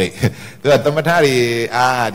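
A man's voice speaking, with one word drawn out in a long, level, chant-like tone about halfway through.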